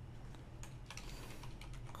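Faint keystrokes on a computer keyboard: a quick, uneven run of taps as a single word is typed.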